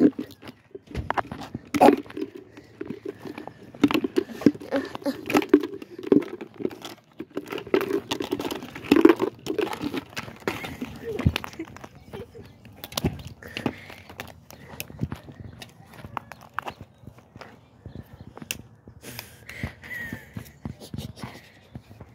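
Scattered clicks, knocks and rustles of plastic Easter eggs and a plastic bucket being handled, with steps on bark mulch, under low muttering voices.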